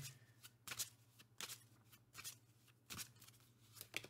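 Deck of astrology oracle cards being handled and shuffled by hand: a string of short, crisp card snaps at irregular intervals, about seven in four seconds, over a faint low hum.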